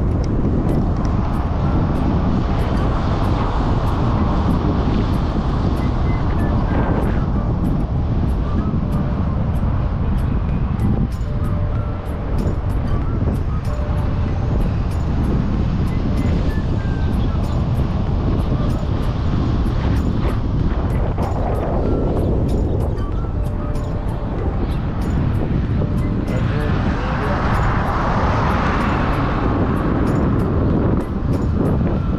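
Car driving along a road: steady road and wind rumble heard from inside the moving car, with faint music underneath. A brighter swell of noise rises near the end.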